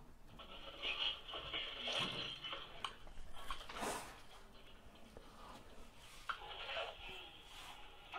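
Faint, thin-sounding speech and sounds from a video playing quietly in the background, with a few small clicks.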